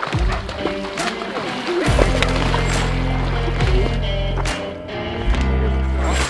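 Background music with deep held bass notes and sharp drum hits.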